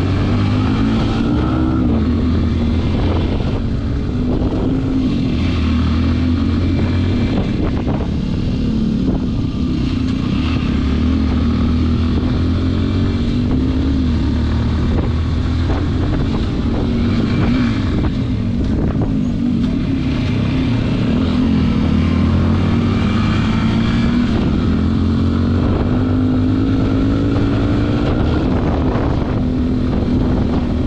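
Motorcycle engine running as it is ridden slowly, its note rising and falling gently with the throttle.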